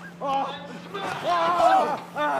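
A man's high-pitched involuntary squeak, like a tiny scared mouse, as a shaking tree smashes into his chest: a short cry about a quarter second in, then a longer wavering one held for most of a second, over a steady low hum.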